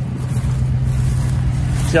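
Chevrolet Silverado 1500 pickup's engine idling steadily, a low even hum.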